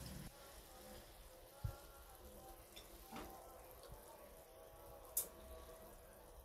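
Faint sizzling from a frying pan of liver and peppers, with a soft knock early and a sharp click about five seconds in.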